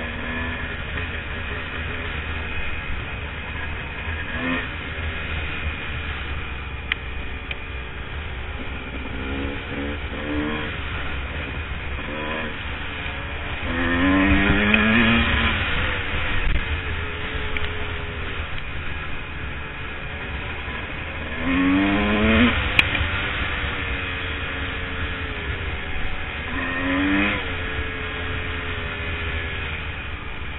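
Dirt bike engine running under way on a trail, with the revs climbing in rising sweeps several times. The loudest sweeps come about halfway through and about three quarters through, with a smaller one near the end, over a steady low rumble.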